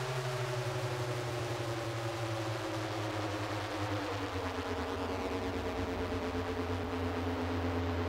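A 1970s rock album track in an effects-laden instrumental passage: a steady droning wash of hiss with several tones gliding slowly downward in pitch, rather than a played tune.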